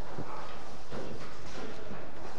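A few dull knocks, about three in two seconds, over steady background noise.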